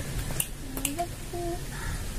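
Two short, sharp clicks about half a second apart, with a few brief, quiet hummed tones at a steady pitch between them.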